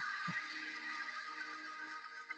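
Intro sound effect of an online video's logo animation: a sustained hissing shimmer with several steady tones held underneath it.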